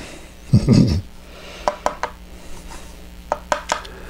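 A cough and short laugh, then a few light, sharp clicks in two small clusters as a paintbrush taps against the plastic watercolour palette while picking up paint from the wells.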